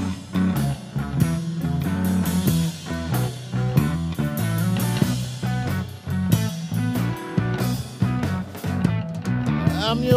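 Live blues-rock band playing an instrumental passage: an electric guitar plays quick runs of notes over bass and drums. Near the end a held note bends in pitch.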